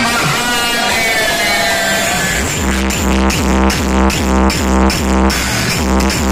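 Electronic dance music played loud through a large outdoor DJ sound system. A gliding synth passage gives way about two seconds in to a heavy, fast, pulsing bass beat.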